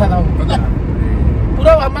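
Steady low road and engine rumble inside a moving car's cabin, with bits of talk over it near the start and end.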